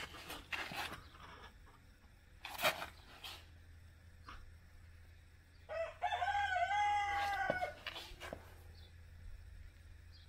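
A rooster crows once, starting about six seconds in and lasting about two seconds; it is the loudest sound. Earlier there are a few short crackles and clicks as the rubber threshold roll is unrolled by hand along the concrete.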